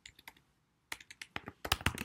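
Typing on a computer keyboard: a few scattered keystrokes, then a quicker run of key clicks in the second half as a line of code is corrected.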